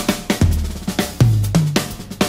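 Drum kit playing a busy passage of strokes over a few held bass notes in an instrumental jazz recording. The guitar melody heard around it is mostly absent here, leaving drums and bass in front.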